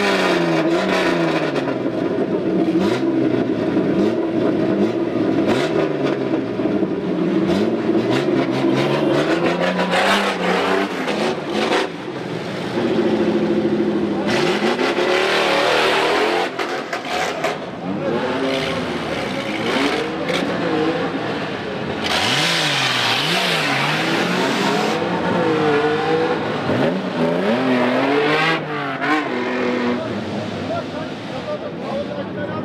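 Off-road rally 4x4s' engines revving as the vehicles pull away one after another, engine pitch repeatedly rising and falling as each accelerates off the start.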